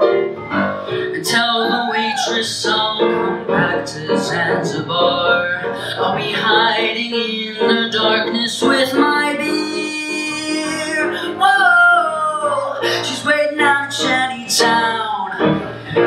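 A male singer vocalizing without words over piano accompaniment, his voice sliding up and down in pitch.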